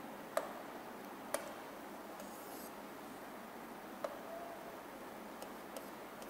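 A few sharp taps of writing on a board: three clear ones in the first four seconds, then two fainter ones near the end, over faint room hiss.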